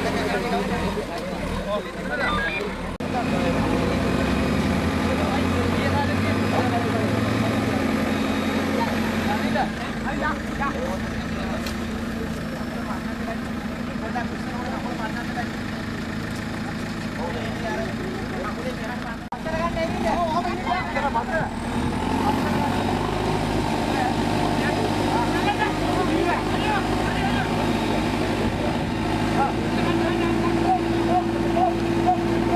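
Diesel engine of a backhoe loader running steadily, with the voices of a crowd talking over it.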